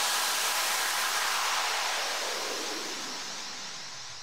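A steady wash of synthesized white noise left over as an electronic dance track ends, fading away slowly with no beat or melody under it.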